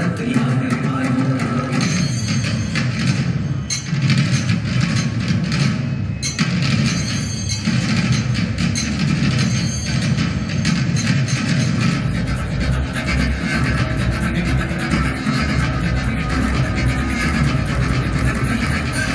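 Music accompanying a sanghanritham (Kerala group dance) performance, dense and continuous, with a heavier bass coming in about twelve seconds in.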